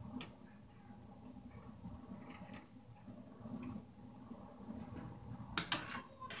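Pliers twisting copper wire ends together in a junction box: faint clicking and scraping of the metal jaws on the wire, with a few louder sharp clicks near the end.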